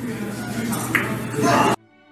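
Billiard balls rolling and clicking on a carom table over steady room noise, with a sharp click about a second in. Near the end this cuts off suddenly to faint, held string music.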